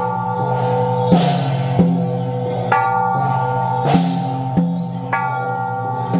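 Hand-held processional gongs struck in a slow, steady beat, their metallic tones ringing on between strikes, with a cymbal crash about every two and a half seconds.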